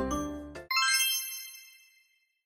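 Light background music fades out, then about two-thirds of a second in comes a single bright bell-like ding that rings down over about a second: a time's-up chime as the countdown timer hits zero.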